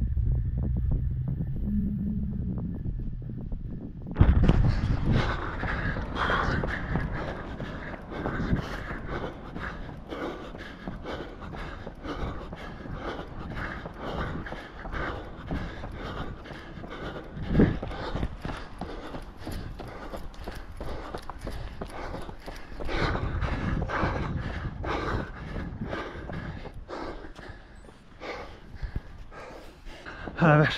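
A runner breathing hard with his footfalls on the road while running fast uphill on the last rep of a hill session. Low wind rumble on the microphone for the first four seconds, then the breathing and steps come in suddenly louder.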